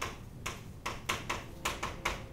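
Chalk writing on a chalkboard: a quick, uneven run of sharp taps and short strokes, several a second.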